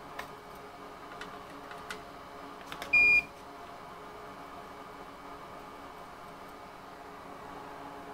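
A single short electronic beep about three seconds in, one steady high tone lasting about a third of a second, over a steady background hum. A few faint clicks come before it.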